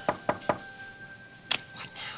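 Quick knocking on a wooden door: a rapid run of raps about five a second that stops about half a second in, then one more sharp rap.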